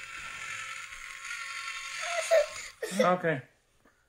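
A battery-powered toy drill whirring steadily, its small motor stopping about two and a half seconds in; a short spoken "okay" follows.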